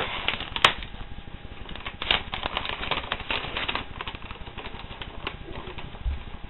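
A sheet of paper rustling and crinkling as it is unrolled and opened out: a run of small crackles, with one sharp click a little over half a second in.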